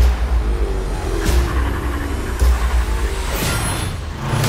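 Film-trailer score and sound design: deep bass hits a little over a second apart under music, with a rising whoosh shortly before the end.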